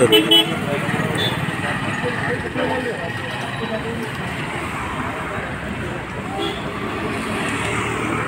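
Busy road traffic: vehicles running past, with short horn toots and people's voices in the background.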